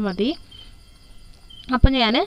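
A woman speaking, broken by a pause of just over a second in which only a faint, steady, high-pitched chirring is heard. A short low thump comes near the end as the speech resumes.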